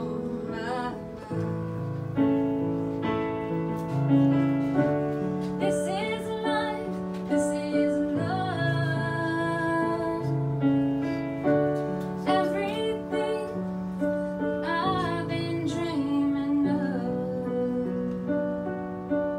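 Piano playing slow, sustained chords that change every second or two, with a woman's voice holding long notes over them at times.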